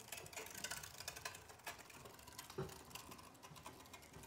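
Faint, irregular clicking and grinding of a hand-cranked cast iron Griswold meat grinder as it turns and grinds chunks of raw pork shoulder.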